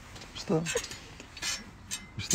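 A brief vocal sound about half a second in, then a few sharp clicks and rustles from a hand handling the phone.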